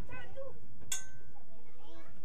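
Voices of a woman and a young child talking in a sing-song way, broken by one sharp metallic clink about a second in.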